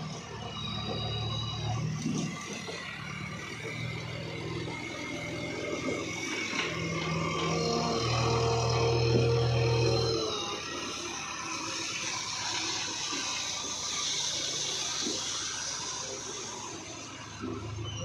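JCB 3DX backhoe loader's diesel engine running, its low note strongest through the first ten seconds, then dropping away. A thin high whine comes and goes over the engine.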